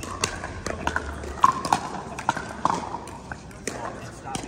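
Pickleball paddles striking a hard plastic ball and the ball bouncing on the court: a string of sharp, hollow pops at uneven spacing, with faint voices behind.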